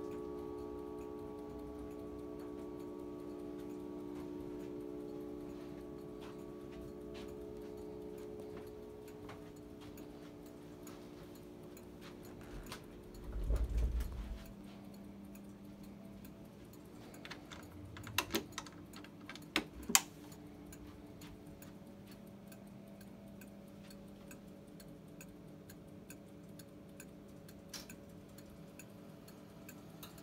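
Antique mahogany bracket clock ticking steadily while the ring of its coiled chime gongs dies away over the first ten seconds or so. A low thump comes about halfway through, and a few sharp clicks follow a little later from handling the case.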